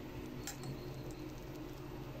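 Faint bubbling of a thick cheese sauce coming to the boil in a stainless steel pot while a spoon slowly stirs it, with a few soft ticks and a low steady hum underneath.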